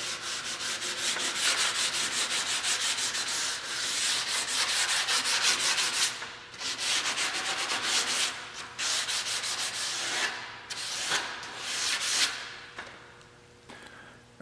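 Fine sandpaper rubbed in rapid back-and-forth strokes along the edge of an aluminium rudder part, several strokes a second, in runs broken by short pauses, deburring and rounding the CNC-cut edge.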